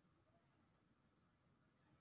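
Near silence: only faint recording hiss.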